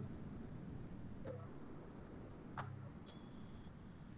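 Faint background noise on a video-call audio line: a low hum that swells briefly now and then, a few faint clicks, and a short faint high tone near the end.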